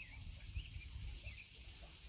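Faint outdoor background: a small bird chirping a few times over a low rumble.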